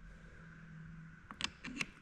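A quick cluster of light clicks and taps in the second half as the small shaft piece of a disassembled electric winch is handled and set into its housing.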